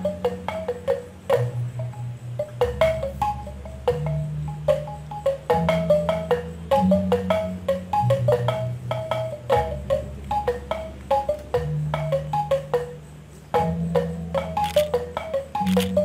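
Balinese gamelan: a row of small bronze kettle gongs, each struck with a mallet by its own player, sounding quick struck notes that hop between several pitches, over low held tones that change pitch every second or two.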